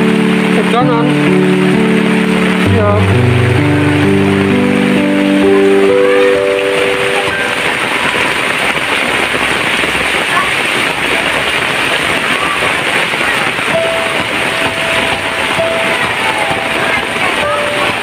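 Heavy rain falling steadily, a dense even hiss.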